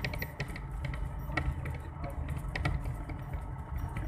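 A moving vehicle: a steady low rumble with irregular rattling clicks.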